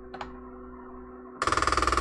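NEMA17 stepper motor on a TMC2209 driver homing the X axis: a steady whine, then about 1.4 s in a loud, rapid grinding rattle as the carriage is driven against the end of its travel. Sensorless homing has no stall sensitivity set, so the stall is not detected and the motor keeps driving.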